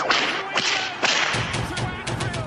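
Intro sting sound effects: three sharp whooshing, whip-like hits, then a quick run of low thumping beats.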